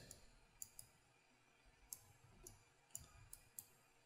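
Faint computer mouse clicks, about half a dozen scattered short clicks over near silence.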